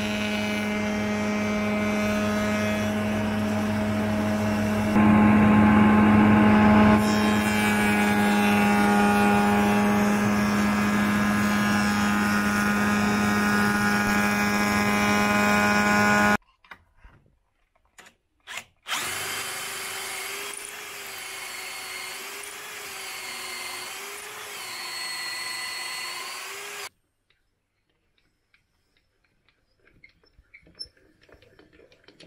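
Spindle moulder (shaper) running steadily with a strong hum, louder for about two seconds as the cutter works the wooden window frame. After a sudden break, a machine runs again more quietly with a slowly wavering pitch, then stops abruptly.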